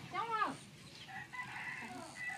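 A rooster crowing faintly, one long held call starting about a second in.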